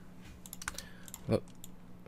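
A few scattered computer keyboard key presses, light and quiet, with a faint steady electrical hum underneath.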